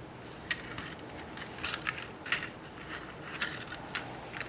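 Irregular small clicks and crinkles, about eight in all, from hands threading beads onto coloured craft wire and handling the thin metal sheet that the wire is woven through.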